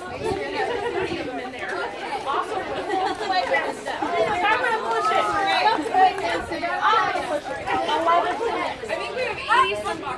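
Overlapping chatter of several children and adults talking at once, with no single clear voice.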